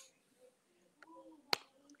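A pause in speech with a faint low murmur, then a single sharp click about one and a half seconds in.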